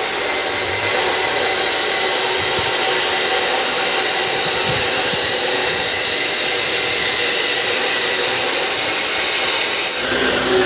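Steady, unbroken rushing noise of machinery running in a workshop, even in level throughout.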